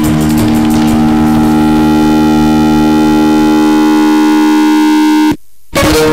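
Live stage music from a violin-led band: one long chord held steady for several seconds. It cuts out abruptly for a moment near the end, then the music resumes.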